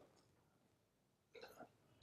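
Near silence: room tone, with a faint short mouth sound from the speaker about one and a half seconds in.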